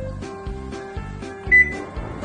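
Background music with a regular beat. About one and a half seconds in, a Panasonic top-loading washing machine's control panel gives a short, high electronic beep as its switch is pressed.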